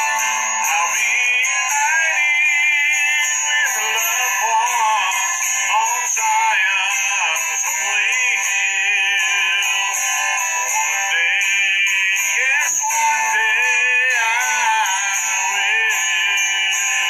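A man singing a slow song solo, his held notes wavering with vibrato and gliding between pitches. The sound is thin, with little bass.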